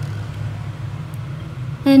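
A steady low background hum. A voice starts speaking near the end.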